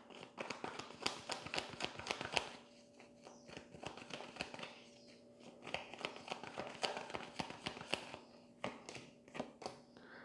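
A tarot deck being shuffled by hand: rapid crisp clicks and taps of cards in two spells, sparser in between, before cards are drawn and laid on the cloth.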